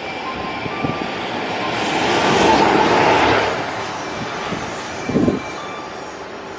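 JR Freight EF210 electric locomotive running light, passing through a station at speed: a rushing of wheels and traction motors that swells to its loudest about halfway through and then fades. Because there are no wagons behind it, the pass is short. A brief knocking comes near the end.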